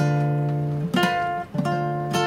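Classical guitar chords strummed and left to ring, with a fresh strum about a second in and another about a second and a half in.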